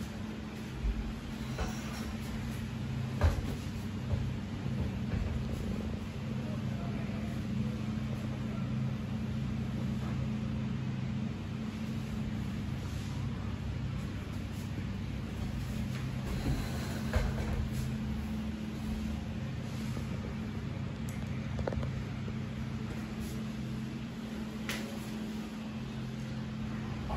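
A steady low electrical or fan-like hum in the room, with a few faint light knocks and rustles of handling.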